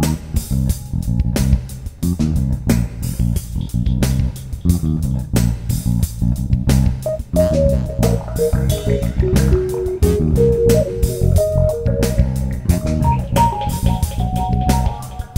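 Instrumental band music: a busy, stepping bass guitar line under steady drum hits, with a higher melody line entering about seven seconds in and climbing higher near the end.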